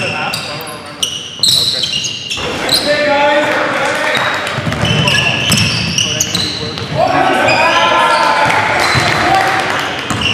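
Basketball game in a gymnasium: a basketball bouncing on the gym floor as it is dribbled, brief high sneaker squeaks, and indistinct voices of players echoing in the hall, loudest in the last few seconds.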